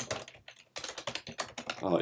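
Typing on a computer keyboard: a quick run of key clicks, with a short break about half a second in.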